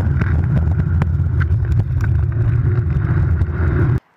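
Loud, steady rumble of wheels rolling fast over pavement, with wind buffeting the microphone and scattered small clicks and rattles; it cuts off suddenly at the end.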